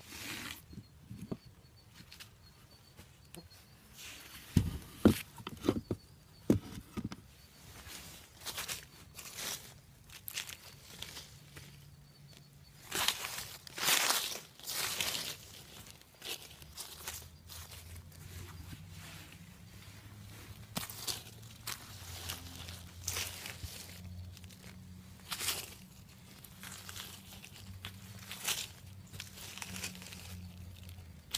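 Hands rummaging through a worm bin's bedding of dry leaves, shredded paper and castings: irregular rustling and crinkling, with a few sharp knocks about five seconds in and a louder stretch of rustling near the middle.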